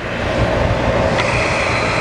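Pneumatic workhead of a Rush 380 drill grinder running on compressed air: a loud, steady hiss of air that builds up at the start, with a thin high whistle joining about halfway through.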